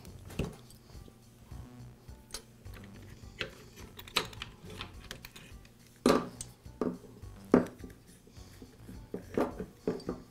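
Light clicks and rattles of ignition wires being handled and pulled free of their clip on a two-stroke chainsaw engine's plastic housing, with three louder knocks about six to eight seconds in.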